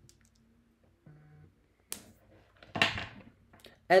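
A single sharp click about two seconds in as a headphone plug is pushed into a splitter cable's jack, in an otherwise quiet small room. A short low hum comes just before it and a brief vocal sound after it.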